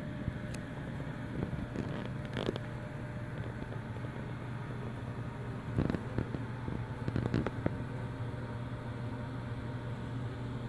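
A steady low hum, with a few faint clicks and a soft knock about six seconds in.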